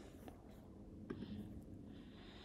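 Near silence: faint room tone with a couple of faint, short clicks, about a quarter second in and about a second in.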